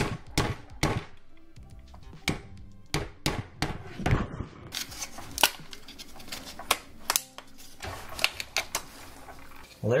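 Irregular sharp clicks and knocks of a screwdriver and fingers working plastic trim clips loose on a steering wheel's frame, with light background music.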